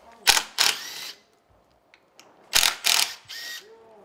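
Short, loud bursts of hand-tool work on the bottom of a wooden door frame, with some metallic ringing: two bursts near the start and three more a little past halfway.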